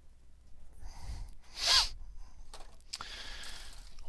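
A single brief, sharp burst of a person's breath or voice a little before halfway, with a short falling pitch at its end, over faint handling noise.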